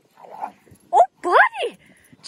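A dog giving two short, sharply pitched barks in quick succession about a second in, the second dropping steeply in pitch: play barking.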